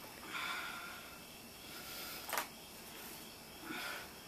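A woman breathing hard with exertion during an ab exercise: a long exhale about half a second in and a shorter breath near the end, with a single sharp click a little past the middle.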